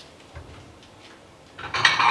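Soft kitchen handling with a few faint clicks, then a brief louder clatter of a pot and utensils on the stove near the end.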